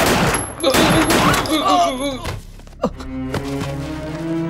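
A burst of gunfire in a film soundtrack, dense for about two seconds, with a man crying out through it. A single sharp hit comes near three seconds, then low bowed-string music begins.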